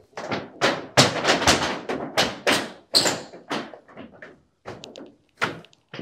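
Irregular knocks and thuds on corrugated metal roof sheeting as a solar panel is pressed down flat onto it, some ringing briefly. They come thick in the first three seconds and grow sparser after.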